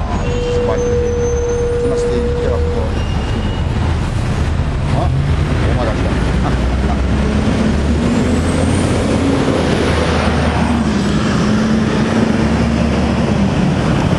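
Busy city street traffic with a large bus's engine running close by as it passes, its low engine sound swelling in the second half with a faint high whine rising and falling. A steady tone sounds for a couple of seconds near the start.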